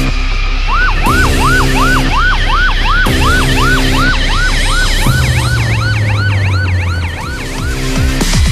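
Emergency siren in a fast yelp, about three rising-and-falling sweeps a second, starting about a second in, over a music bed of sustained chords and bass.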